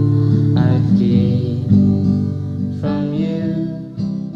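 Music: acoustic guitar chords, strummed a few times and left to ring.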